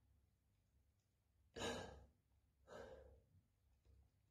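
A man sighing twice, two breathy exhales about a second apart, the first louder and sharper.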